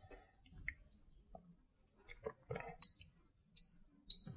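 Marker squeaking on the glass of a lightboard as a word is written: a run of short, high-pitched squeaks, one per stroke.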